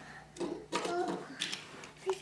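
A young child's voice making a few short vocal sounds, with a couple of soft clicks or rustles.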